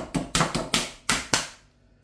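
Kitchen knife point stabbing through the plastic film lid of a ready-meal tray: a quick run of sharp taps, about five a second, that stops about one and a half seconds in. The film is being pricked before the meal goes in the microwave.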